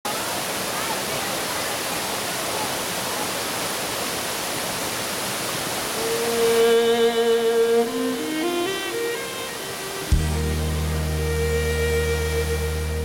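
Steady rush of a waterfall for about six seconds, then background music comes in over it: a melody of held notes, joined by a deep sustained bass note about ten seconds in.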